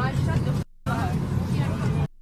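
Voices talking in an airliner cabin over the cabin's steady low hum; the sound cuts out completely for a moment a little over half a second in.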